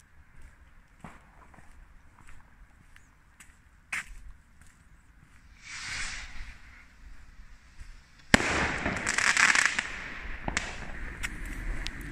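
New Year's fireworks and firecrackers going off around town: scattered sharp bangs and a brief swell of hiss, then a loud, sharp bang about two-thirds of the way in followed by about two seconds of dense crackling.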